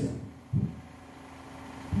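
A pause in a rapper's a cappella verse through a handheld microphone and PA: his last word trails off, a brief low sound comes through the mic about half a second in, then a faint steady hum from the sound system.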